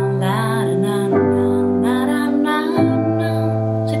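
Digital piano playing three held chords in a row: C major, G major, then A minor voiced with only C and E over the A in the bass, changing about a second in and again near three seconds. A woman's voice sings the melody along with it in places.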